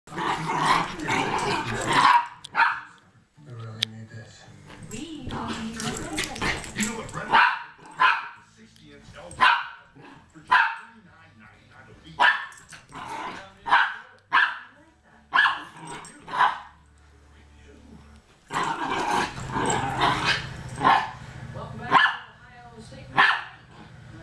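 Two small dogs play-fighting: loud, short, sharp barks about a second apart, broken by longer stretches of growling.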